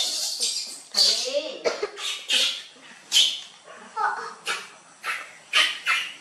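Soft voice sounds: a run of short breathy, hissing bursts about once a second, with a brief wavering pitched call just after the start.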